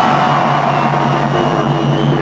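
Dubstep DJ set over a festival sound system: a loud, sustained low bass drone with high synth tones held above it, over crowd noise.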